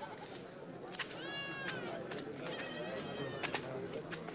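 Two high-pitched goat bleats, the first falling in pitch and the second held for about a second. Behind them are a low murmur of distant voices and a few sharp clicks.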